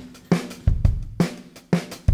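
Background music: a drum kit plays a steady beat of bass drum and snare hits with cymbals, about two or three strikes a second.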